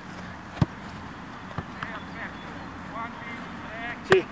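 A football hit once, a sharp thud just over half a second in, with a fainter knock about a second later, over faint distant voices.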